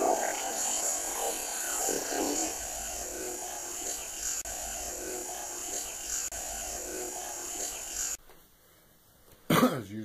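Boosted audio-recorder hiss carrying faint, indistinct voice-like murmurs that recur every second or so, put forward as a possible spirit voice saying "help me". The hiss cuts off suddenly about eight seconds in, and a man starts speaking near the end.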